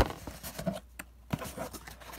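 Cardboard box flaps being pulled open by hand: one sharp snap right at the start, then scattered rustling and clicking of cardboard.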